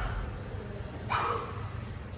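A barbell deadlift rep: the loaded iron plates touch down with a dull thud at the very start, and about a second in the lifter gives a short, forceful huffing exhale as he pulls the bar up.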